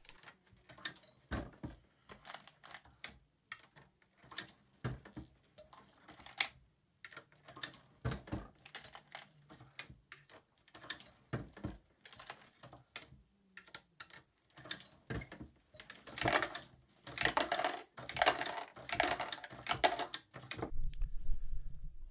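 Fired 6.5 Creedmoor brass cases being deprimed in a single-stage reloading press with a Lee decapping die: a string of small metallic clicks and clinks, with a busier run of clinking a few seconds before the end.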